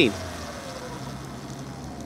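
Sur-Ron electric dirt bike's motor whine falling in pitch and fading as the bike slows to a stop, leaving a faint low hum and road noise.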